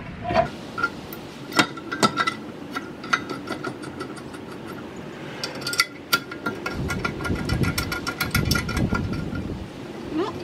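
Metal clinks and knocks as a steel brake caliper bracket is lined up on a new rotor and its bolts are started, with a run of light, rapid clicks through the middle.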